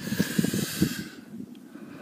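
A man's breathy exhale: a hiss of about a second that fades away.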